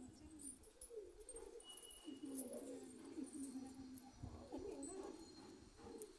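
Faint, low cooing bird calls in several short phrases that rise and fall in pitch.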